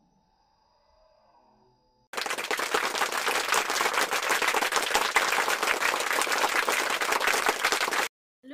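Applause, a crowd clapping, played as a sound effect: it starts abruptly about two seconds in and is cut off sharply at the end. Before it, only faint soft tones.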